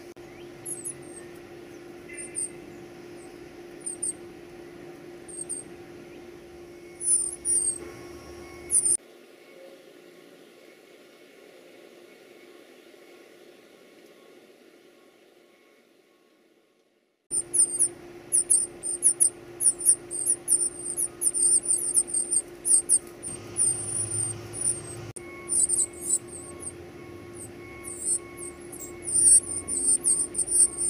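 Northern cardinal nestlings begging with thin, very high peeps, scattered at first; the sound fades to near silence and then cuts back in abruptly about seventeen seconds in with rapid, almost continuous peeping. A steady low hum runs underneath.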